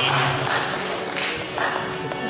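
Audience applause with a brief word from a man, and near the end a folk band starts to play.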